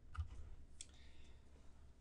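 Two faint clicks about half a second apart over quiet room tone.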